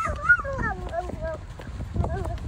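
A toddler's high-pitched, wordless squeals and calls that rise and fall in pitch, over quick footsteps running on a concrete path.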